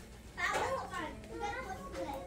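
Indistinct people's voices, one of them high-pitched, talking over a steady low hum; the voices get louder about half a second in.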